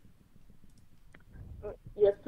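A few faint, sharp clicks in a quiet pause, about a second in and again near the end.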